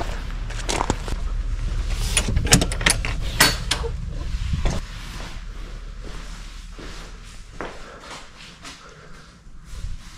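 Footsteps and scattered clicks and knocks from someone walking a stony path and moving around inside an empty stone bothy. A low rumble runs under the first half, and the sound turns quieter after about five seconds.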